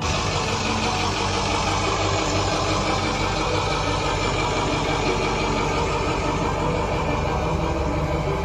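A steady, loud mechanical running noise like an engine, starting suddenly and holding even throughout.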